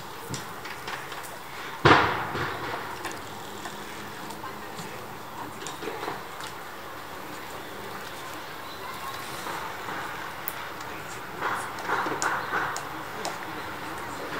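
Outdoor pond-side ambience: a steady background hiss, one sudden loud sound about two seconds in that dies away over about a second, and distant people's voices near the end.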